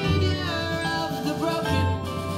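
A rock song with a male voice singing over sustained instrumental backing and low bass notes, played through an N-monitors X600 studio monitor loudspeaker and picked up in the room.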